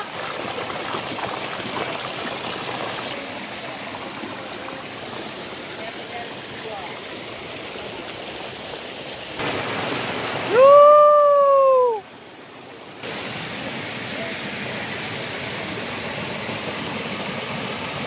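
A mountain stream rushing and splashing over rocks in a steady wash. About ten seconds in, a loud held pitched call of about a second and a half rises, holds and drops away at its end.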